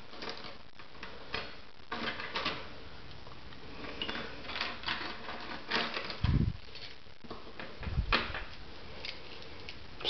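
A ring of metal keys jingling and clicking as it is handled and the keys slide and knock on a vanity countertop, in short irregular bursts. Two low thumps come about six and eight seconds in.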